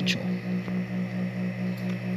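Philips DVD player running with a disc spinning, a low hum that pulses evenly about four to five times a second. The laser pickup's right-hand potentiometer has just been turned up slightly so that the player reads discs again.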